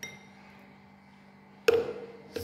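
A metal spoon clinking twice. The first is a light tap on a ceramic bowl with a short high ring. The second, near the end, is a louder knock against the blender jar with a lower ring.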